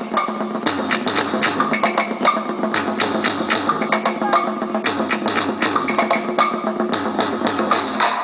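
Polynesian drum music: fast, dense wooden percussion over drums, with a steady low tone underneath.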